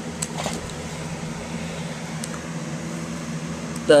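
A steady low hum of room background noise, with a few faint clicks scattered through it.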